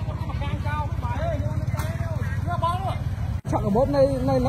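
People talking on a street over the steady, low rumble of an idling motor vehicle engine. The sound drops out for an instant about three and a half seconds in.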